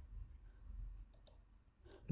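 Near silence with two faint, quick computer clicks a little past one second in, as the lesson slide is advanced.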